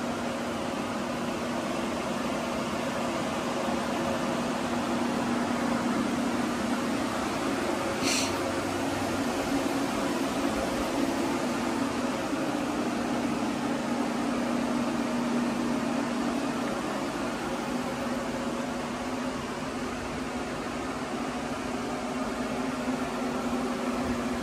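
Steady whir of blowers and dehumidifiers running to dry out a flood-soaked building, with a constant low hum under the rushing air.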